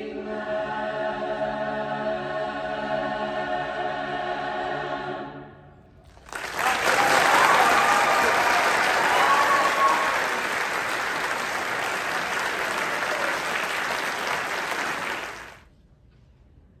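A choir holds its final chord, which fades out about five seconds in. After a short pause the audience applauds, with a few whoops, until the applause cuts off shortly before the end.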